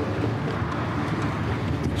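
Steady road and engine rumble heard from inside a moving car's cabin.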